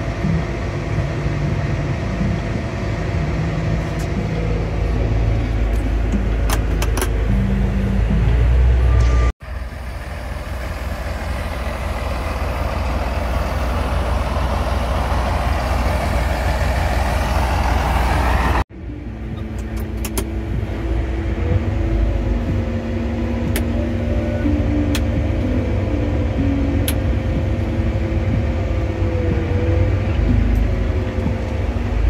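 Large John Deere farm tractors' diesel engines running, with a steady low drone. The sound cuts sharply twice; in the middle stretch it swells and rises in pitch, and in the last stretch a steady whine sits over the engine.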